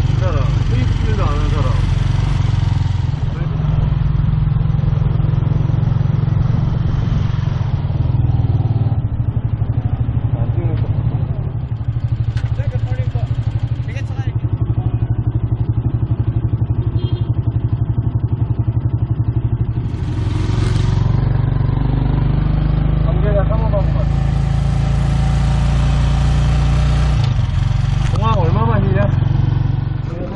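Motorcycle engine of a passenger tricycle (motorcycle with sidecar), heard from inside the cab, running with a steady low drone. It eases off for a stretch in the middle and picks up again toward the end.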